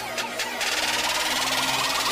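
Electronic music sound effect: a dense, rapid buzzing noise that swells in about half a second in over a low held note.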